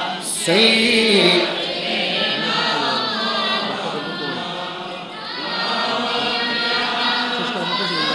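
A congregation of men and boys chanting together in unison, many voices at once, as in group zikr or salawat at a religious gathering.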